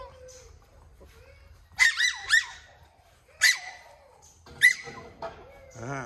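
A small puppy yapping in short, high-pitched yips: a quick cluster of two or three about two seconds in, then single yips roughly a second apart.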